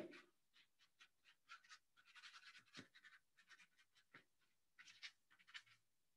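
Near silence: room tone with a few faint, scattered small clicks and scratches.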